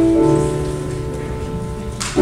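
Piano music: a held chord slowly fading, with a lower note coming in just after the start, before the next chord is struck.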